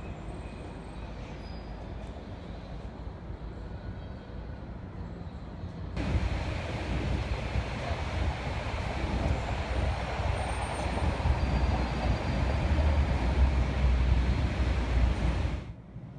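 Steady low rumble with a hiss, like a vehicle running. It jumps louder about six seconds in, grows through the second half, and cuts off abruptly near the end.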